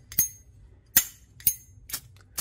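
Brass Zorro windproof flip-top lighter's lid clicking open and shut, four sharp metallic clicks about half a second apart.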